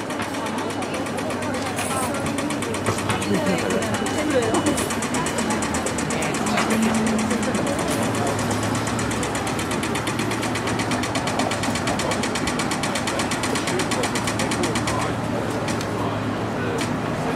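Pedestrian crossing signal ticking rapidly, about nine ticks a second: the walk phase of an audio-tactile crossing button, telling pedestrians to cross. It starts about two seconds in and stops about a second before the end, over crowd chatter and traffic.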